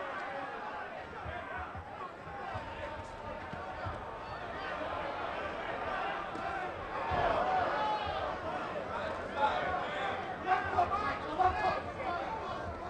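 Arena crowd chatter and shouting from many overlapping voices, growing louder about seven seconds in.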